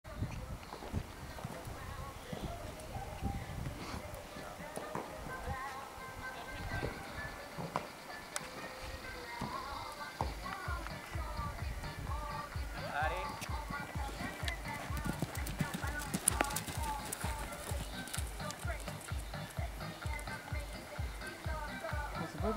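A horse cantering on an arena's sand footing, its hoofbeats a steady rhythm of dull thuds from about ten seconds in, with voices and music behind.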